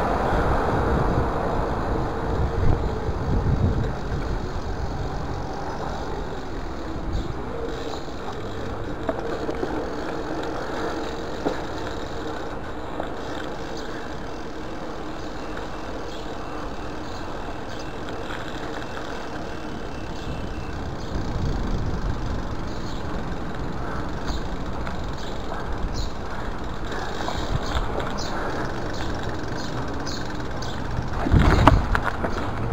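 Mountain bike rolling over paving and concrete and onto gravel, heard from a chest-mounted camera: a steady rolling noise, with small clicks and rattles toward the end.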